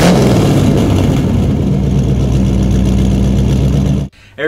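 Car engine revving, then holding a steady note. It cuts off suddenly at the end.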